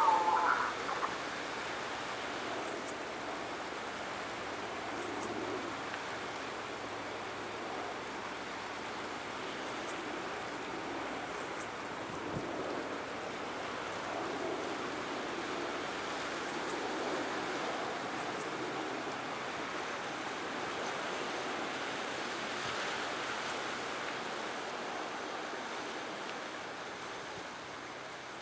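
Steady rushing of sea surf washing on a rocky shore, growing slightly quieter near the end.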